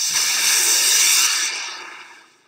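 A loud whooshing hiss sound effect that starts suddenly and fades away over the last half second.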